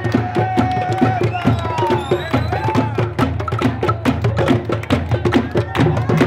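A street drum group beating hand-held drums with sticks in a quick, steady beat, with voices in the crowd calling out over it.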